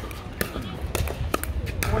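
Four sharp, irregularly spaced clicks of hard plastic pickleballs in play.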